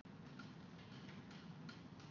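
Faint, irregular little taps of a marker pen dotting on a whiteboard, over quiet room tone.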